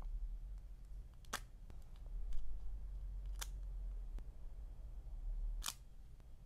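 Three short, sharp clicks about two seconds apart over a low steady hum: tweezers tapping and picking at a sticker sheet and paper while stickers are placed on a journal page.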